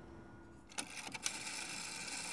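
Rotary telephone dial on a 1960s exchange test panel running back to rest after being turned: a faint mechanical whirr with light clicks, starting about a second in.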